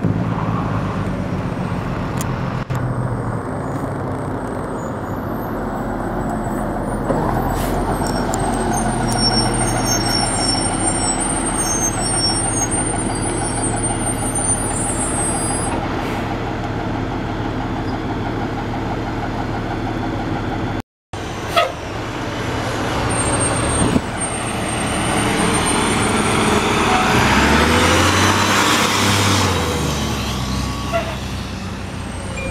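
Heavy fire trucks' diesel engines running as the trucks drive past at close range. The sound grows louder near the end as a truck passes close.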